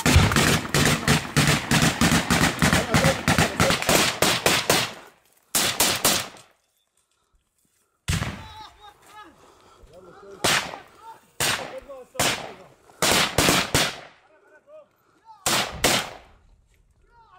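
Close automatic gunfire: rifle shots in rapid succession, running together for about the first five seconds. After a pause of about a second and a half, single shots and short bursts come roughly a second apart, with men's voices faint in between.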